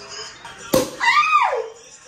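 Champagne cork popping out of a Korbel bottle with one sharp pop. Right after it comes a short squeal from a woman that rises and then falls in pitch.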